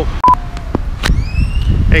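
A short electronic beep at a break in the recording, typical of an action camera coming back on after shutting itself off in the heat, followed by a few clicks and a high tone that rises slowly over most of a second, over low traffic rumble.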